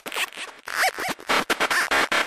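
Synthesized sound effects in the closing section of an electronic dance track: choppy, stuttering bursts of scratchy noise, with short chirps that rise and fall in pitch, and no steady beat.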